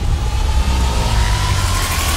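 Trailer sound design: a heavy, deep rumble under a hissing wash, with a thin tone slowly rising in pitch as a build-up riser.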